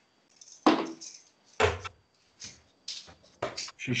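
Steel-tip darts thudding into a dartboard, two sharp hits about a second apart, followed by a few softer knocks and clicks.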